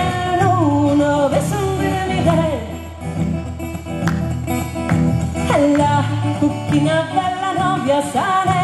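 A woman singing live to her own acoustic guitar accompaniment; her voice pauses for a couple of seconds around the middle while the guitar plays on.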